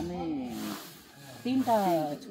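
A person's voice talking, with a short break just after a second in.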